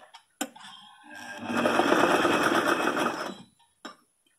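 Sewing machine stitching in one run of about two seconds, starting up and then stopping, sewing down a fold of denim pleat. A couple of sharp clicks come just before it and one comes near the end.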